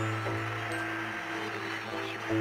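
Slow live instrumental fusion music from acoustic guitar and Korean zither (geomungo) over a steady low drone, with long held notes and no clear beat.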